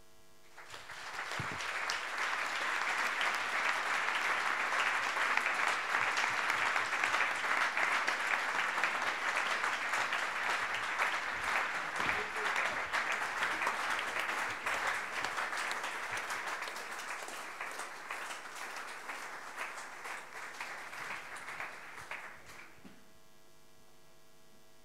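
Audience applause from a large hall crowd, swelling within the first couple of seconds, holding steady, then thinning out and dying away about a second before the end.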